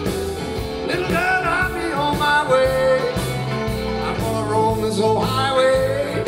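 Electric blues-rock recording, a band with electric guitar, played back through Sonus Faber Olympica Nova 3 floorstanding speakers and picked up in the listening room.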